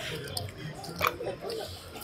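Soft clicks of casino chips and cards being handled on a baccarat table: two short sharp clicks, one about a third of a second in and one about a second in, over a low murmur of background voices.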